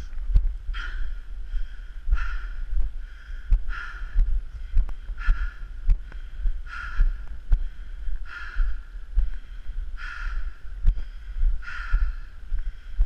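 A person breathing hard and evenly, about one breath every second and a half, from the effort of walking uphill, with footsteps and light taps of a trekking pole between the breaths.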